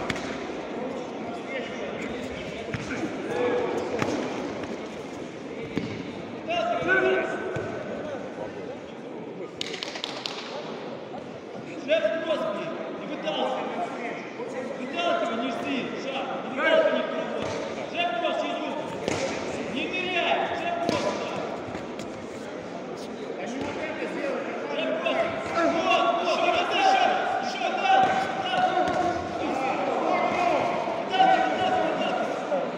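Voices shouting in a large echoing hall through a combat-sport bout, with sharp thuds of blows landing and feet on the mat scattered among them.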